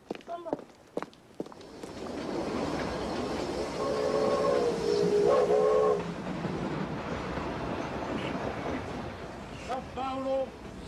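A passenger train running on the rails, its steady running noise building up, with two whistle blasts between about four and six seconds in, the second shorter. Before that, a few footsteps on pavement.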